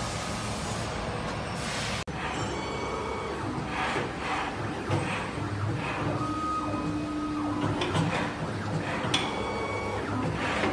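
Automatic cable cutting and stripping machine running: steady motor whines rise and fall, with repeated short mechanical knocks about once a second, after a steady hiss and a sudden cut about two seconds in.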